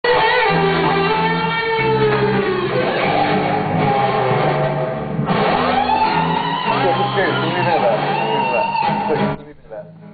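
Guitar chords with a voice singing long, held notes over them, cutting off suddenly about nine seconds in.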